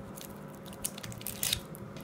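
Light handling sounds: a few faint crinkles and small clicks as a hand lifts a silver bar out of a cardboard gift box.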